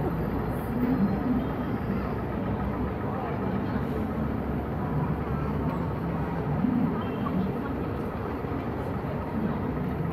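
Busy city-square ambience: a steady low rumble, as of traffic, with faint chatter of passers-by.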